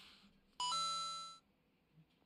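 Short electronic chime: a quick rising two-note ding about half a second in, fading away within a second.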